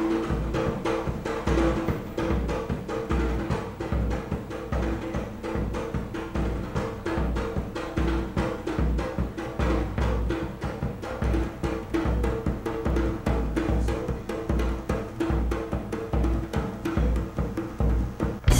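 Drums playing a fast, steady beat with deep hits, over a held tone, as dance accompaniment in a live calypso show.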